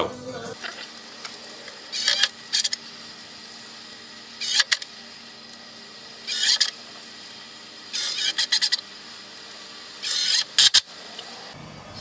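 Cordless drill-driver driving woodscrews into fence timber, in short bursts about every two seconds.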